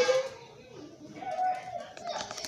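Audio of a cartoon video playing from a TV speaker: a voice trails off, then there is a brief lull and a faint held sung note about one and a half seconds in.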